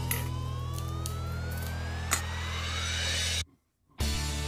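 Background music with a steady low bass chord under a single slow rising pitch sweep. It cuts off abruptly about three and a half seconds in, leaving a brief silence.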